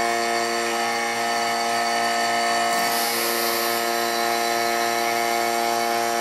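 Electric vacuum pump running with a steady hum, pulling on the chamber while the vacuum relief valve lets air in to hold the set vacuum level. A brief airy hiss rises about three seconds in.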